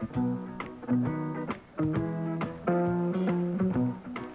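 A live country band starts a song: electric guitar and bass pick out a bouncing instrumental intro in short phrases, with sharp clicks marking the beat.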